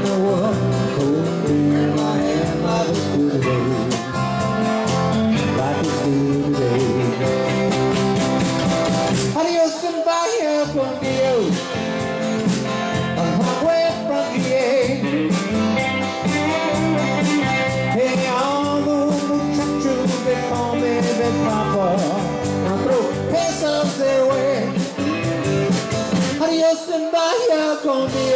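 Live country-rock band playing, with electric bass, drum kit, acoustic and electric guitars, and a bending melody line over the top. About ten seconds in, the bass and drums drop out for about a second before the full band comes back in.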